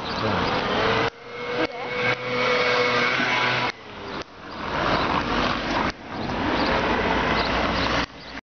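Loud, steady hiss of street traffic on a wet road, with a faint steady whine from a passing vehicle in the first half. The sound swells and then drops out abruptly several times.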